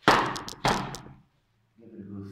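Two sharp knocks about two-thirds of a second apart, each trailing off briefly: a plastic plant pot knocked against a wooden work table during repotting.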